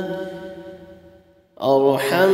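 A voice chanting an Arabic dua (supplication): the end of a long held note fades out over about a second and a half, and the next phrase, "bi-rahmatika", begins near the end.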